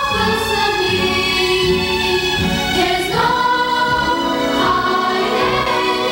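Children's choir singing, holding long notes, with the melody stepping up in pitch about three seconds in and again near the end.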